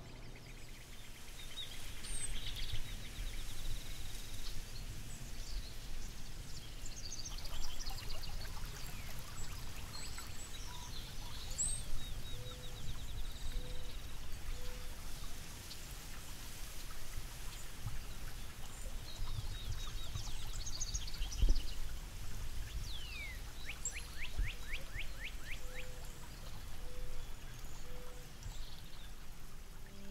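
Outdoor woodland ambience: several birds singing and calling with chirps and trills, including a fast falling trill and a low three-note call heard twice, over a steady low rushing rumble. A single dull thump stands out about two-thirds of the way through.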